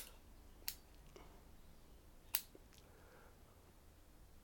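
Bonsai pruning shears snipping overlong shoots off a Chinese elm: three sharp snips, the first right at the start, one just under a second in and the last about two and a half seconds in.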